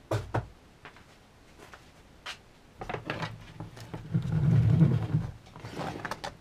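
Handling noise from an inspection camera's semi-rigid cable and plastic handle being moved about on a wooden workbench: two sharp knocks at the start, a few light clicks, then a louder rustle about four to five seconds in.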